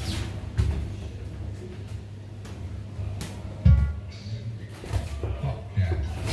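Boxing sparring in a ring: gloved punches and footwork on the canvas give several dull thuds, the loudest a little past the middle, over background music.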